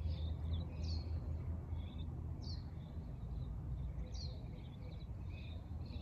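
Birds chirping in the background: a short, high, falling chirp repeats about every second and a half, with softer twitters between. Under it runs a steady low hum.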